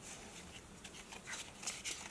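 Faint rustling and light scattered ticks of Pokémon trading cards being slid and rearranged in the hands.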